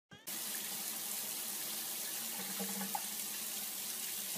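Water running steadily from a bathtub tap, an even hiss that starts about a quarter of a second in.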